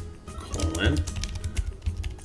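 Computer keyboard being typed on: a quick, irregular run of key clicks.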